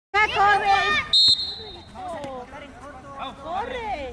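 A short, sharp blast on a referee's whistle about a second in, a single steady high note that stops abruptly, following a man's loud shout and followed by quieter children's voices across the pitch.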